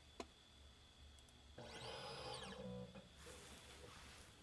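Faint small motor whine that rises and then falls in pitch over about a second and a half, after a light click near the start. It is typical of the scanning stage of an M-squared beam-quality meter moving during a measurement.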